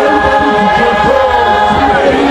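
A choir singing a Shona hymn together, unaccompanied, with voices holding long notes and gliding between them.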